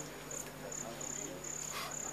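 A cricket trilling: a high, thin tone in repeated pulses, about three a second.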